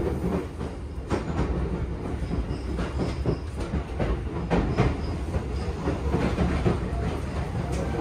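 Tobu 10080/10050-series electric commuter train running on the rails, heard from inside the carriage: a steady low rumble with irregular clacks of the wheels over rail joints and points.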